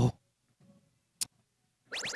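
A single sharp click about a second in, with near silence around it; a short rising electronic chirp begins right at the end.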